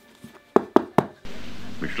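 Three sharp knocks about a quarter second apart on the hard cover of an old book. About a second and a quarter in, the steady hiss of an old speech recording starts.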